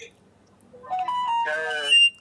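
A short melody of stepped, clear electronic-sounding notes starting just under a second in, building into a fuller chord-like tone and ending on a sharp high note.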